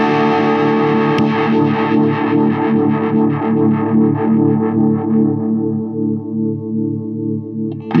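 Distorted electric guitar played through a Diamond Pedals Drive overdrive pedal, picking a sustained rhythmic part. From about halfway through, the treble fades away gradually as the pedal's Warmth knob is turned, leaving a darker, more muffled overdrive tone.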